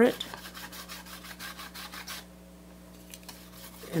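A rag rubbed quickly back and forth over a painted wooden board, wiping back a heavy patch of still-damp paint: a fast run of scratchy strokes, densest in the first two seconds and sparser after.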